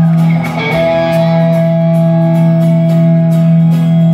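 Instrumental rock music: a sustained guitar chord rings on over a steady beat, with a brief dip about half a second in.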